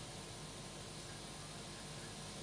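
Faint steady hiss with a low hum underneath: the broadcast's background noise floor in a gap between spoken lines.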